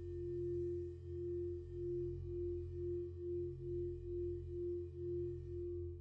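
Dark ambient background music: a held mid-pitched drone that pulses about twice a second over steady low sustained tones.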